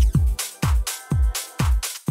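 House music with a steady four-on-the-floor kick drum, about two beats a second, with crisp high percussion on each beat.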